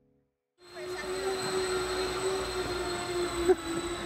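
Steady hum and high whine of small electric RC aircraft motors and propellers. It starts suddenly about half a second in.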